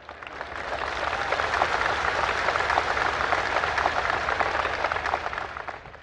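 Large crowd applauding. The clapping builds over the first second, holds steady, and dies away near the end.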